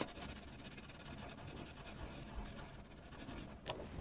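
Felt-tip marker scribbling back and forth on paper to colour in an area, a faint rapid scratching.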